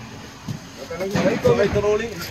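Indistinct men's voices talking to each other, loudest in the second half, with no clear words.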